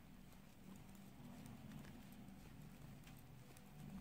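Near silence, with faint light clicks of metal knitting needles as plain (knit) stitches are worked, over a low steady hum.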